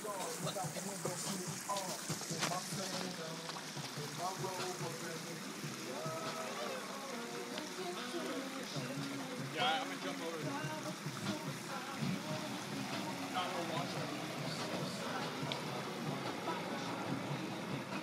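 Indistinct voices of people talking at a distance, too faint for words, over a steady background hiss.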